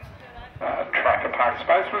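Speech: a commentator's voice, loud and close from about half a second in, after a quieter opening.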